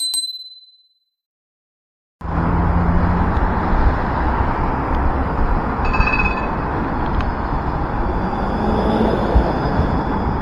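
A single bell ding from the subscribe-button animation, dying away within a second. After a short silence, city street noise starts about two seconds in: steady traffic with a low rumble as a tram passes close by near the end.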